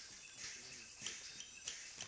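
Tropical rainforest ambience: a steady high hiss of insects with short, high bird chirps scattered through it.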